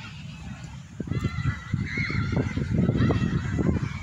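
Distant shouts and calls of footballers across the pitch: many short cries that rise and fall in pitch, over a low rumble on the microphone that grows louder about a second in.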